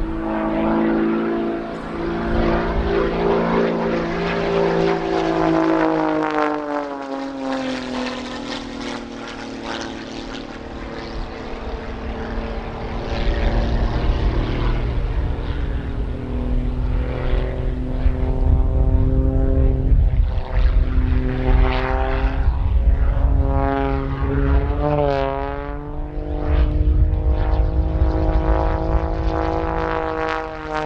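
Pitts Special S2S aerobatic biplane's piston engine and propeller in display flight, its note sinking and rising over and over as it climbs, dives and tumbles, with a fast warble in pitch about five seconds before the end.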